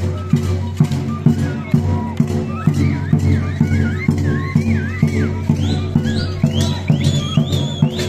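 Large double-headed bass drum beaten with a stick in a steady rhythm of about two strokes a second, accompanying a traditional dance. From about two and a half seconds in, a high wavering melody joins it and climbs higher toward the end.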